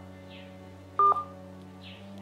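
Sustained low background music drone, with a single short electronic beep about a second in.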